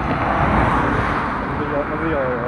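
A car passing along the road, its tyre and engine noise swelling early on and slowly fading away.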